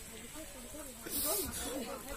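Faint, indistinct voices in the background, with a short breathy hiss about a second in.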